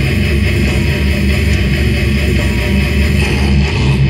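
Live slam death metal band playing: heavily distorted electric guitar over drums and bass, loud and dense throughout, recorded from the room of a small venue.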